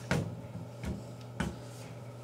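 Three light clicks and knocks spread over about a second and a half as an AK-47 rifle is handled and laid into place, metal and wooden parts tapping.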